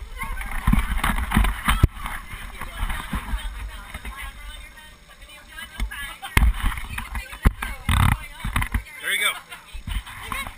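Bumps and rubbing on a GoPro helmet camera as it is handled and passed over, in irregular clusters early and again late, with people talking in the background.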